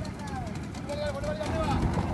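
Men's voices calling out across the water, drawn-out gliding calls, over a steady low rumble from a small boat's outboard motor.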